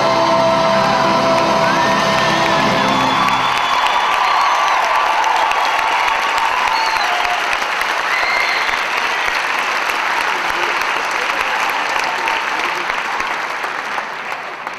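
A live band with a horn section ends a song on a held final chord that stops about three and a half seconds in. The audience then applauds and cheers, with a few whoops, and the applause slowly fades.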